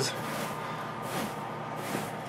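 Steady low background noise, with faint rustling of dry shredded bedding as a hand digs through a snake tank's substrate.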